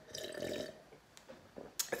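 A man sipping coffee from a ceramic mug: a short, faint slurping sip lasting about half a second, then a few faint clicks.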